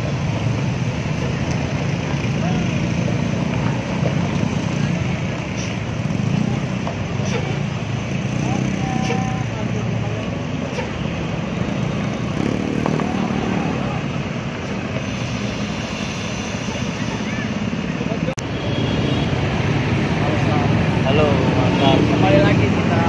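Diesel engine of a Hino R260 tour bus running as the bus turns in and manoeuvres, a steady low rumble, with road traffic and voices around it.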